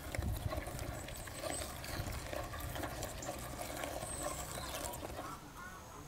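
Hand kneading and squeezing freshly minced raw meat, a wet, irregular squelching. Faint bird chirps come in near the end.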